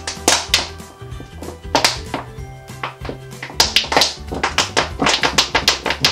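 Background music, over it sharp crackles and taps from a thin plastic water bottle being squeezed by hand to push foam out, coming thick and fast in the second half.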